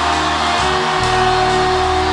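Sustained worship-music chords held steady, over the even roar of a congregation shouting and crying out together after the count of three.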